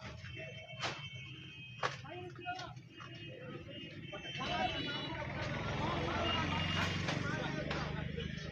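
Men's voices in a crowd, with two sharp knocks about one and two seconds in as a roadside stall's roof and frame are pulled down. From about halfway through the commotion grows louder, a dense mix of noise and voices over a low rumble.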